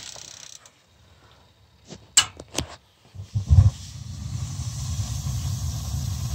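A couple of sharp clicks, then about three and a half seconds in the boiler's atmospheric gas burners light with a low thump and settle into a steady low rumble that grows a little louder, as the gas is turned back on.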